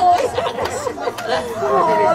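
Speech only: women's voices talking.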